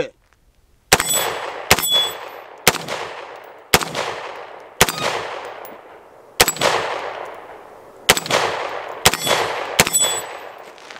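Nine single shots from a CMMG Banshee AR pistol chambered in 5.7x28mm with a five-inch barrel, fired at a slow, uneven pace of about one a second, with a short pause near the middle. Each shot trails off in a long echo.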